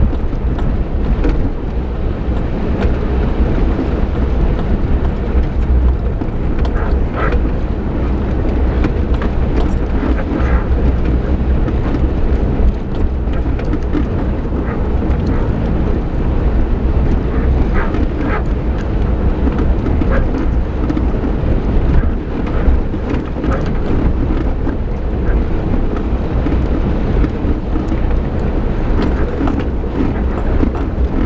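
Suzuki Jimny driving along a rutted, muddy track, heard from inside the cabin: a steady low engine and road rumble, with frequent small knocks and rattles as the vehicle rides over the ruts.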